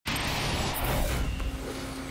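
Rushing whoosh sound effect with a low rumble under an animated broadcast logo, starting abruptly and thinning out after about a second.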